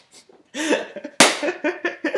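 A person laughing in quick short bursts, set off by a sharp cough-like burst about a second in.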